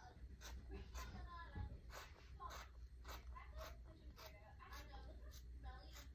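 Faint snips of scissors cutting through fabric, roughly one a second, with a faint voice murmuring in the background.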